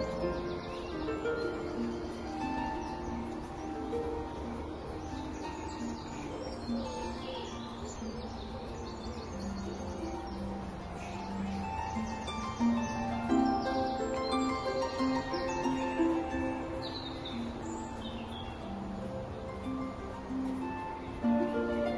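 Instrumental background music of held notes, with birds chirping over it at intervals.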